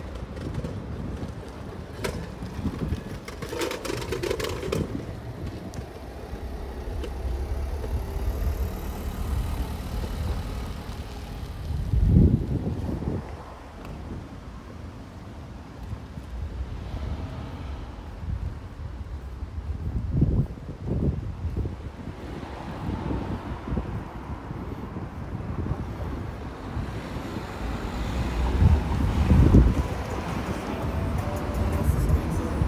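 Outdoor street ambience with cars driving past and wind buffeting the microphone. A low rumble runs throughout, rising in loud swells about twelve seconds in, around twenty seconds and again near the end.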